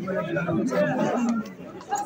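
Market chatter: several people talking over one another, with a brief lull near the end.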